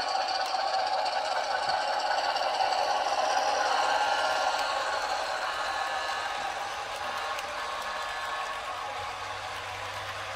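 HO-scale model train, a Rapido ALCO PA diesel A-B set pulling freight cars, rolling past on the layout track: a steady mechanical running and clatter of wheels and cars, loudest a few seconds in and then slowly fading as the train moves on.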